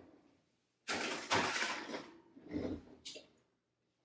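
A baking sheet scraping as it slides onto a metal oven rack, then the oven door of an electric range shutting with a low thump about two and a half seconds in.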